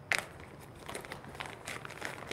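Clear plastic bag crinkling as hands reach into it: a sharper rustle just after the start, then faint scattered crinkles.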